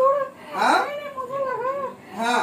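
A woman wailing without words in a high, wavering voice, the pitch rising and falling in arcs, with a sharper cry about halfway through.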